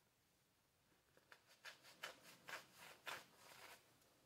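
Faint rustling of a microfiber towel wiping a small metal differential gear, a string of quick rubbing strokes starting about a second in.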